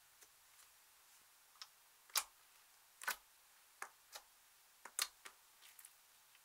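Clear slime mixed with crumbled red eyeshadow being squeezed and pulled by hand, giving irregular sharp sticky clicks and pops, about ten in six seconds, the loudest a little over two seconds in.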